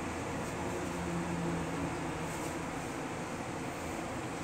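Steady running noise of a Nagoya Tsurumai Line 3000-series subway train, heard from inside the car, with a low hum that swells slightly about a second in.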